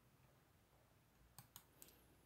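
Near silence: room tone, with a few faint, brief clicks in the second half.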